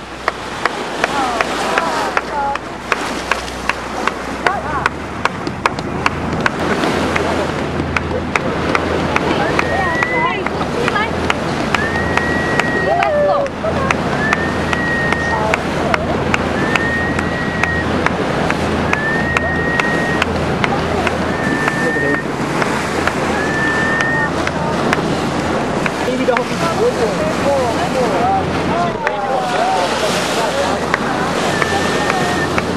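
Water rushing and splashing along the hull of a boat under way, with wind on the microphone and many sharp ticks. A low engine drone grows stronger about five seconds in. Through the middle, a run of seven short, high, flat whistle-like tones repeats about every second and a half.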